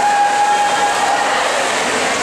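Echoing din of an indoor pool during a swim race, with splashing and shouting from spectators; one high held note, a drawn-out shout or whistle, sounds over it for about the first second and a half.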